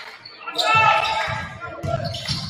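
A basketball being dribbled on a hardwood gym floor, with voices calling out in the echoing hall. The loudest part, a pitched call, comes about half a second in.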